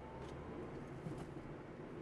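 Steady low road and engine noise of a moving car, heard inside the cabin, with a couple of faint ticks.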